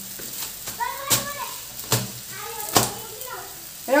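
Hands slapping and crushing a hot, freshly cooked porotta on a kitchen counter to open its flaky layers: three sharp slaps a little under a second apart. Voices are heard between the slaps.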